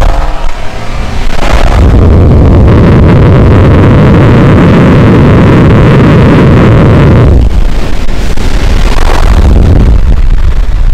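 Two cars accelerating flat out side by side, heard from inside a Tesla Model 3 with the window down: a loud rush of wind and road noise mixed with the exhaust of a modified Mercedes-AMG C63 S, whose twin-turbo V8 has downpipes and a tune. The rush builds about a second and a half in and eases off about seven seconds in, as the cars lift off.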